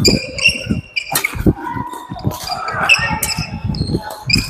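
Badminton doubles rally: rackets sharply striking the shuttlecock several times, with court shoes squeaking on the hall floor and thudding footfalls as the players move.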